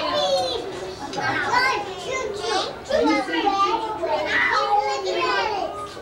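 Young children's voices, high-pitched talking and calling out that goes on without a break.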